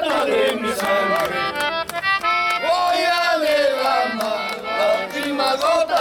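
Button accordion playing a Bolivian folk song, with men singing along and hands clapping.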